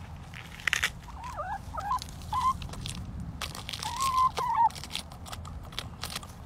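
Backyard hens pecking and tearing at lettuce leaves, with many crisp snapping and crunching sounds. Several short hen calls come in a cluster early on, and a longer call about four seconds in.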